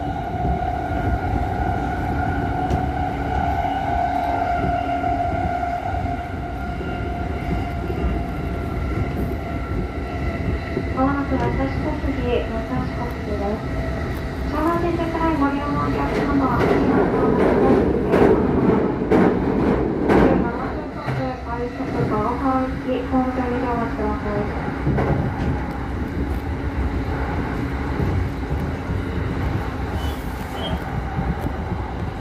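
Electric commuter train running, heard from inside the car: a steady rumble of wheels on rail under a steady electric motor whine. About halfway through, a train passing close on the next track brings a louder rush for about four seconds.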